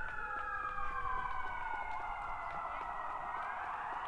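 Emergency vehicle siren wailing, its pitch sliding slowly down over about two seconds and then climbing again.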